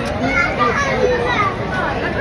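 Indistinct chatter with high children's voices calling and playing over a steady background babble.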